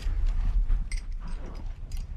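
Burglary tools being worked on a safe: a few light metallic clicks and taps over a low steady rumble.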